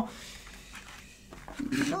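Faint handling of a plastic Genius GX Gaming membrane keyboard being pushed on a wooden desk to test its grip: a soft, low scrape with no sharp knocks, as it barely slides.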